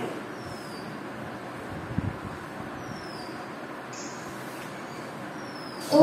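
Steady classroom room noise: an even hiss with one short low thump about two seconds in, and a few faint, short, high falling chirps.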